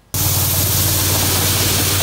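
Compact sidewalk-cleaning machine running, its front rotary brush sweeping fresh snow: a steady low engine hum under a loud, even hiss of brush bristles and thrown snow. It starts suddenly just after the beginning.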